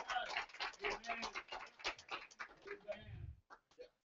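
Congregation clapping in a rapid, uneven patter, with a few voices calling out among the claps. It fades out about three and a half seconds in.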